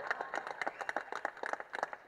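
Audience applause: many people clapping in quick, irregular claps during a pause in a speech.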